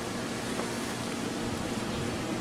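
Steady hiss of background noise with no distinct sounds standing out.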